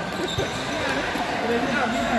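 A single thud of a futsal ball hitting the indoor court about half a second in, over the chatter of spectators' voices.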